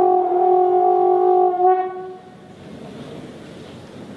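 Trombone holding one long, steady note that stops about two seconds in, leaving only faint sound.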